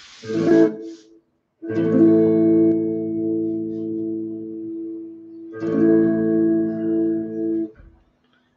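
Clean electric guitar strumming two chords in turn, each left to ring: the first starts about two seconds in and fades slowly, and the second comes just past halfway and is damped shortly before the end. They are played to show a chord and its relative minor. A brief sound comes just before the first chord.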